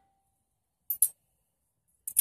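Two quick light clicks close together about a second in, with near silence around them.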